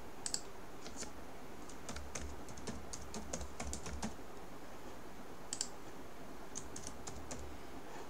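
Computer keyboard typing: quiet keystroke clicks in short runs, a dense run from about two to four seconds in and a few more later on.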